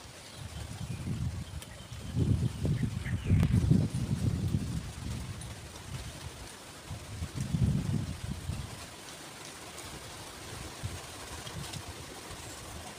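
Wind buffeting the microphone in low rumbling gusts, strongest about two seconds in and again around seven seconds, with a few faint bird chirps.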